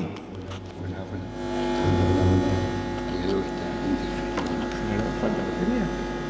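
A steady electrical buzz made of several held tones over a low hum, from the audio system while its microphones are faulty and switched off. Faint voices sound in the background.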